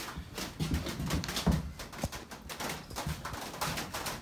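Handling noise from the seat of a Scag zero-turn mower being tipped up: scattered light knocks, clicks and rubbing at irregular intervals.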